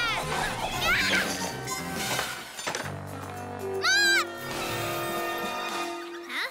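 Animated-cartoon soundtrack: background music with short, high-pitched character cries, the loudest about four seconds in.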